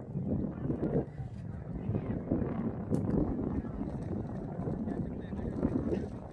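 Outdoor field ambience: wind rumbling on the microphone with muffled, indistinct voices, and a single sharp click about three seconds in.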